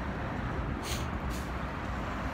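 Street traffic: a steady low rumble of passing vehicles, with two brief hisses about a second in.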